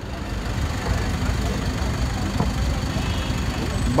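A passenger van's engine idling steadily at the curb, a low continuous rumble, with faint voices of people around it.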